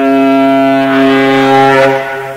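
Alto saxophone holding one loud, low note, thick with overtones and with a second, lower tone sounding beneath it. The note starts just before this moment and fades near the end.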